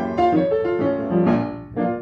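Acoustic upright piano played solo in a jazz-standard style: melody notes over changing chords. The playing eases off briefly near the end before another chord is struck.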